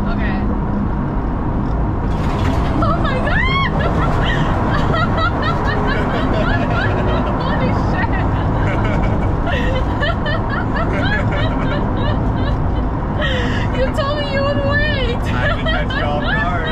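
Two people laughing over the steady engine and road noise inside the cabin of a stripped, roll-caged minivan on the move, with rising and falling laughs about three seconds in and again near the end.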